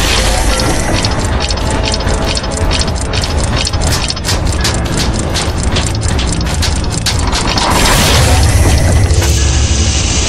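Sound-design clockwork effects of ratcheting, clicking gears, several clicks a second, over a deep rumbling music bed. Near the end the clicking gives way to a louder swelling rumble.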